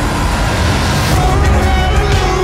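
Trailer soundtrack: a low rumbling swell that grows louder, with a wavering melodic line coming in about a second in as it builds into music.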